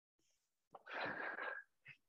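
A man drawing one audible breath, lasting about a second, near the middle.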